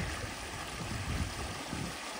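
Muddy water from a drained beaver dam rushing steadily through the breach in the dam, a continuous rush of flowing water with a low rumble underneath.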